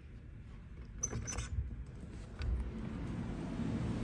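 Metal lever handle and latch of a glazed French door clicking and rattling about a second in as the door is opened, followed by a low outdoor rumble that grows louder as the door swings open.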